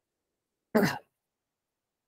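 A person clears their throat once, a short sharp burst about a second in.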